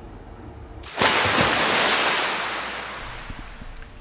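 A wave crashing about a second in, then its wash fading away gradually.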